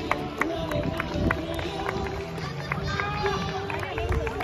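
Boys' voices on a football pitch, with scattered sharp hand slaps as two youth teams file past each other in a post-match handshake line.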